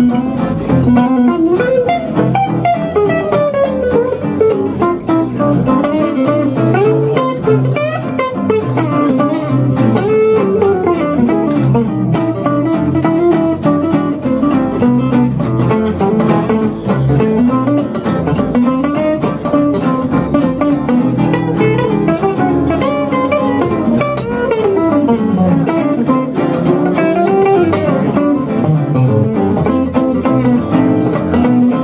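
A live gypsy-jazz tune: an archtop guitar plays a solo of fast single-note runs that climb and fall, over steady bass notes from the band's accompaniment.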